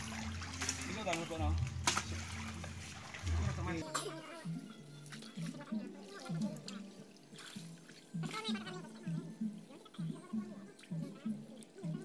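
Indistinct voices and water sloshing as people wade waist-deep in a river.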